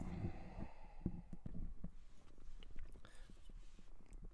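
Handling noise from a plastic start/stop button assembly: a run of small, irregular clicks and rubbing close to the microphone, over a low rumble.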